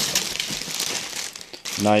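Clear plastic packaging bag crinkling irregularly as a hand grips and pulls at it, with a man's voice starting near the end.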